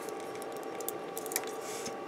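A few light clicks of plastic model-kit parts (a Kotobukiya D-Style Arbalest) being pressed together by hand as the legs are fitted to the body, over a steady faint hum.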